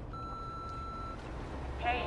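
A single steady electronic beep, about a second long.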